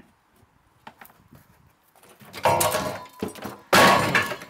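A heavy wooden beam being knocked off a concrete wall: scraping and clattering from about halfway through, then a loud sudden thud near the end as it lands on the ground.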